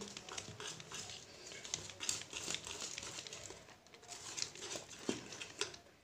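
Wire balloon whisk stirring thick cake batter in a bowl, a quiet, irregular run of soft clicks and scrapes as the wires turn through the batter and knock the bowl's side. The flour is being mixed into the batter.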